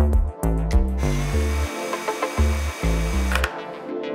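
Cordless drill-driver running for about two and a half seconds, starting about a second in and stopping shortly before the end, as it drives a screw through a metal drawer side into a chipboard panel. It runs at one steady pitch, over background music with a steady beat.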